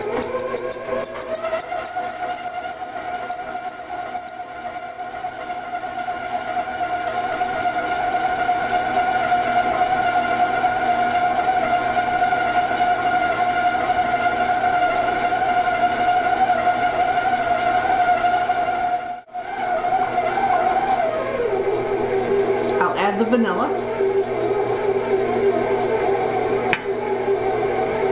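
Stand mixer motor running with a steady whine as its paddle creams butter and sugar in a metal bowl. About three-quarters of the way through, after a brief break in the sound, the whine settles to a lower pitch.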